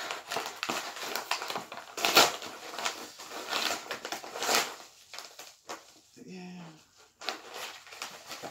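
Paper padded mailer being torn open by hand: a run of ripping and crinkling paper, loudest about two seconds in, thinning out after about five seconds, with one more rip near the end.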